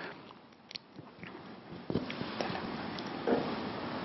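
Quiet pause in a lecture hall: faint room tone with a few small clicks and a short soft sound just after three seconds in.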